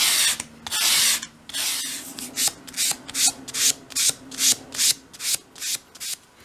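Small piece of sheet wood rubbed back and forth by hand on a sheet of sandpaper, bevelling its edge. There are three long strokes at first, then shorter, quicker strokes about two and a half a second.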